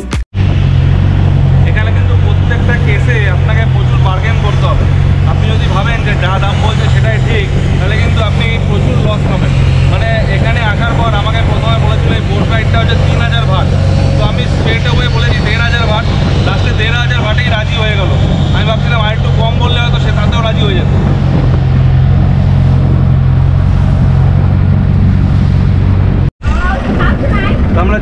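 A river passenger boat's engine running steadily with a loud low drone. There is a brief dropout near the end, after which it resumes.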